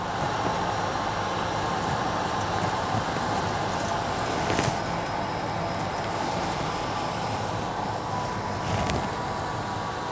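Grundfos CR3-10 vertical multistage centrifugal pumps running together on a booster set: a steady hum and rush of motors and water, with a faint click about halfway through and another near the end.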